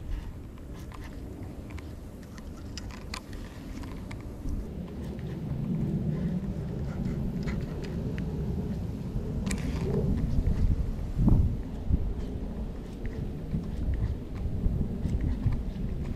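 Wind rumbling on the microphone, growing louder about five seconds in, with a few faint clicks.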